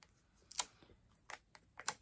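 A handful of light, sharp clicks and taps as fingers peel foam adhesive dimensionals off their plastic backing sheet and press them onto a cardstock panel.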